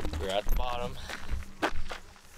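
Footsteps on a gravel path: a few separate crunching steps, the loudest about half a second in and near the end, with a brief wordless voice sound in the first second.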